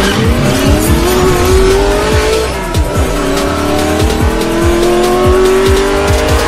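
Intro music with a steady electronic beat under a race-car engine sound effect revving up. The engine pitch climbs, drops about two and a half seconds in as if shifting gear, then climbs again.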